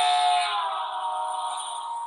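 Passing train's horn sounding a steady chord that drops in pitch about half a second in, then fades as the train moves away: the Doppler shift from a higher to a lower pitch as the source goes by.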